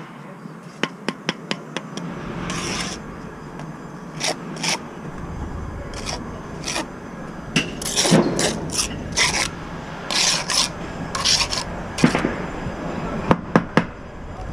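Steel brick trowel scraping mortar and working bricks into a course: repeated short scrapes, with a few sharp taps of steel on brick near the end.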